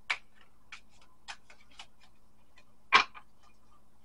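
A deck of tarot cards handled and shuffled by hand: a few short, separate clicks of cards snapping and tapping against each other, the loudest about three seconds in.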